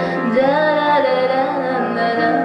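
A woman singing a long, wavering held phrase without clear words, accompanied by a grand piano.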